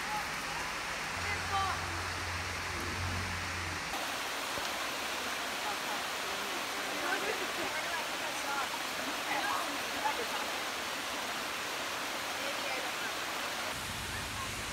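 Steady rush of a shallow, rocky creek running over stones, with faint voices in the background.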